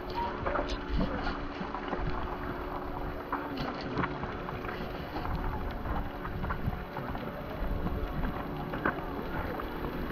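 Wind buffeting the camera microphone, a fluctuating low rumble, with scattered light ticks and taps throughout.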